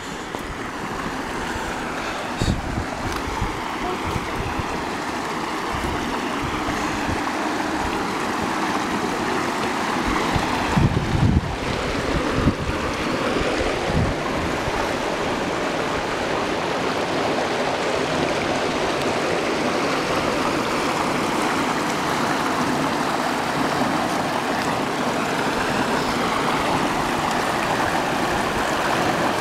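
Water flowing steadily through a dam spillway's outlet channel, a continuous rushing that grows slowly louder over the first several seconds. A few low gusts of wind hit the microphone around the middle.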